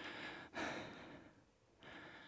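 A woman breathing audibly from exertion during slow squats: soft breaths in and out, the loudest in the middle, another starting near the end.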